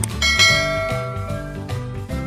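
Background music, with a sharp click and then a bright bell ding sound effect a fraction of a second in that rings out for about a second: the notification-bell chime of a subscribe-button animation.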